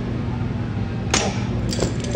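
Metal gym equipment clinks: one sharp metallic clink with a short ring about a second in, then a couple of lighter clinks, consistent with a cable machine's steel handle and clip being knocked as a set ends. A steady low hum continues underneath.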